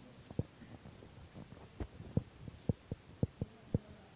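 Footsteps: a series of dull, low thumps, about eight of them, coming closer together in the second half.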